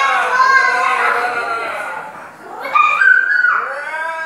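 Young children's high-pitched voices squealing and calling out in play, in two runs with a short lull in the middle.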